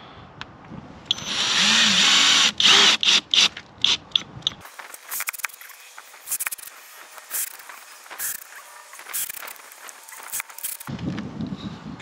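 24-volt cordless drill-driver driving screws into a plastic RV water fill dish. It runs steadily for about a second and a half, then in several short bursts. After that come a few separate sharp clicks, about one a second.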